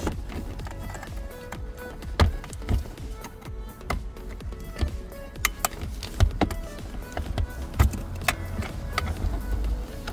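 Sharp, irregular clicks and knocks of the plastic dashboard trim panel and its clips as it is worked loose by hand, over background music.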